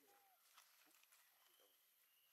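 Near silence: faint outdoor background hiss with a brief faint call just after the start and a few light rustles.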